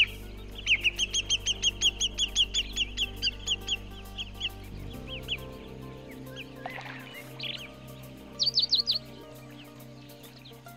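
Bird calls: a long run of repeated sharp chirps at about four a second, a few scattered calls, then a quick burst of four or five higher notes near the end. Under them plays background music of slow, sustained low chords.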